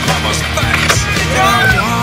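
Skateboard wheels rolling on a concrete bowl, with a few clacks of the board, under a loud rock song with a singer.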